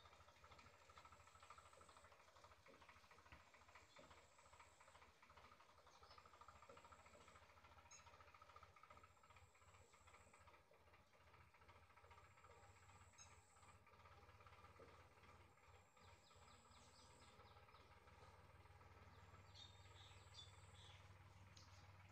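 Near silence: faint ambient background with faint, short high-pitched chirps repeating every second or two.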